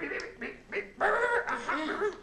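A person laughing, starting about a second in.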